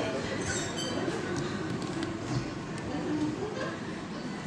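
Indistinct background voices and general hubbub of a busy shop floor, with no clear words.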